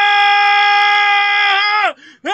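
A man's voice belting one long, loud, high note from anger in an improvised vocal release. The note is held steady, then slides down in pitch and breaks off near the end.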